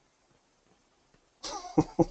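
Near silence, then about one and a half seconds in a person's short breathy vocal outburst: a burst followed by two quick pulses.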